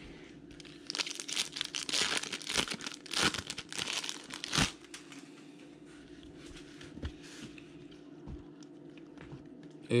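Foil wrapper of a Topps Chrome jumbo pack of baseball cards crinkling and tearing as it is ripped open: about four seconds of rustling and crackling, ending in a sharp snap. After that only a faint steady hum.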